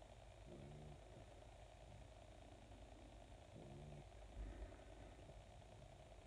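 Near silence: room tone with a low hum, broken by two faint, brief pitched sounds and a soft low thump about four and a half seconds in.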